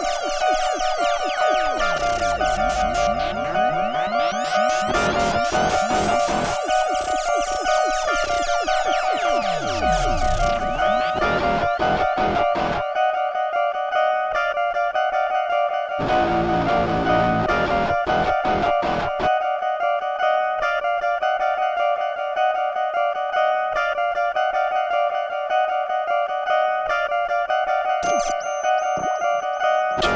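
Live-looped electronic music from synthesizers and a loop station: several held notes under a fast clicking beat, with synth glides sweeping up and down through roughly the first ten seconds.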